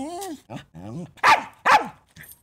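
A small dog barking and yelping in a quick series of short calls. The two loudest barks come close together just past the middle.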